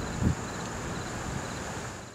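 Outdoor night ambience with a steady high-pitched insect drone over a low rumble, and one low thump about a quarter second in. The sound starts to fade near the end.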